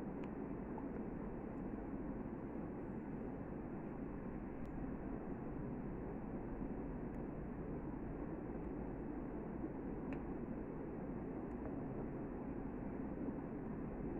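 Steady low hiss of room noise, with a couple of faint light ticks from metal knitting needles as stitches are knitted.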